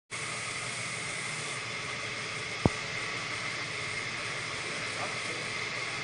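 A steady, even hiss of moving air with no rhythm, broken by one sharp click about two and a half seconds in.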